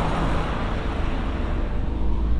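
Steady low rumble of a vehicle driving slowly, heard from inside its cabin: engine and tyre noise.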